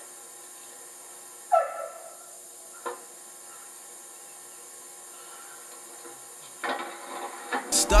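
Steady hiss from the old video tape, broken by a short voice-like sound that falls in pitch about one and a half seconds in and a single sharp knock about a second later. Music starts to come in near the end.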